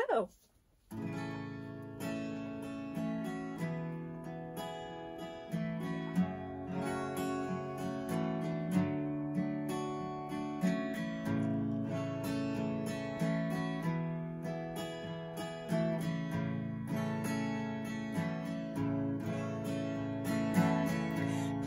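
Acoustic guitar playing a strummed instrumental introduction to a song, starting about a second in, with the chords changing every few seconds.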